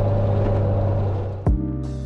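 The 1952 Alvis TA21's straight-six engine running steadily on the move, heard from inside the cabin with road noise. About one and a half seconds in it gives way suddenly to background music with sharp struck beats.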